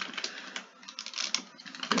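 Typing on a computer keyboard: a quick run of separate keystroke clicks as a short word is typed.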